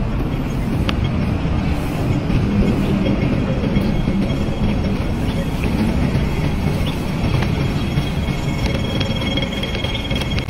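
Steady low rumble of outdoor street noise.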